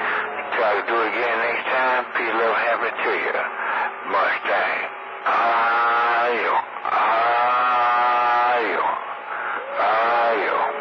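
Voices talking over CB radio channel 28, long-distance skip heard through the receiver's speaker, thin and narrow-sounding. Two longer drawn-out sounds come in the middle.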